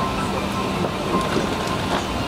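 Steady airliner cabin noise inside a parked Airbus A380: a constant rush of air from the ventilation, with other passengers' voices in the background.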